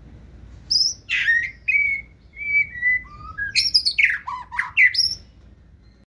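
Male white-rumped shama singing one phrase: clear whistled notes, several held level, then a run of quick, varied notes that swoop up and down. It starts just under a second in and ends a little after five seconds.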